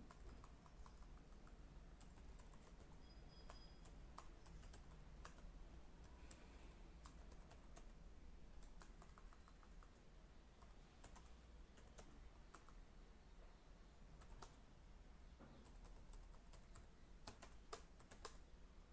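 Faint computer-keyboard typing: scattered, irregular keystroke clicks over a low steady hum.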